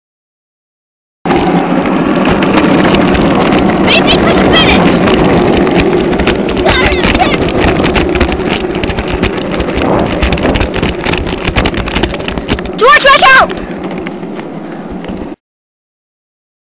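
Loud, steady rumbling noise of a go-kart run on a paved street, starting suddenly about a second in and cutting off abruptly just before the end. Voices sound over it, with a short rising shout near the end.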